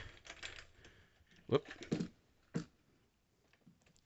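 Light clicking and rattling handling noise from a camera being lowered on its mount, with a couple of short, louder knocks about halfway through.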